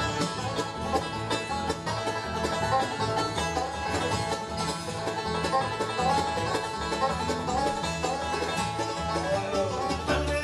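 Live bluegrass band playing an instrumental passage, with banjo picking over acoustic guitar and an upright bass line.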